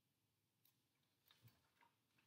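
Near silence, with a few faint ticks and soft rustles of a paperback picture book's pages being handled and turned in the second half.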